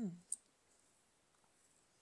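A single sharp plastic click: the lid of a tub of cleaning paste coming off.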